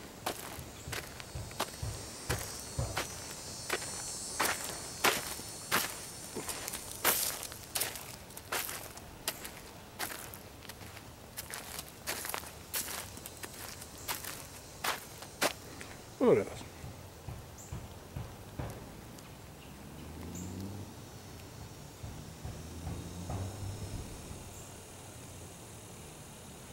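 Footsteps walking at a steady pace on a sandy dirt trail strewn with dry leaves, with a faint high insect buzz in the first several seconds. The steps thin out about two-thirds of the way through.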